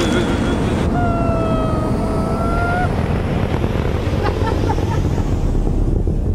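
A loud, steady rumbling roar like a rocket or jet, with a single held cry from about one second in that dips a little and rises before stopping near the three-second mark.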